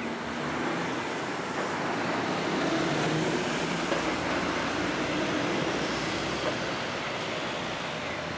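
Road traffic noise, a passing vehicle's sound swelling over the first few seconds and then slowly easing off.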